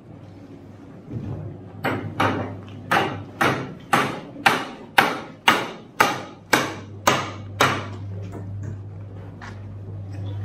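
Hammer blows: about a dozen regular strikes, about two a second, each ringing briefly in the bare room. They begin about two seconds in and stop near the eight-second mark.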